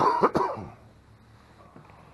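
A person coughing twice in quick succession, loud and short, in the first half-second.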